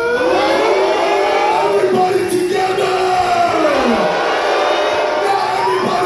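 Live music over a festival stage's sound system with crowd noise. A long pitched tone glides upward, holds, falls away about four seconds in, and starts rising again near the end.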